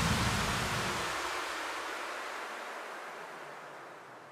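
Hardstyle track's closing noise wash: an even hiss that fades out steadily, its bass dropping away about a second in.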